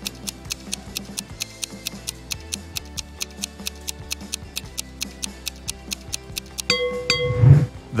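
Rapid, even clock-like ticking of a countdown timer over soft background music. Near the end a bell-like chime marks the end of the countdown.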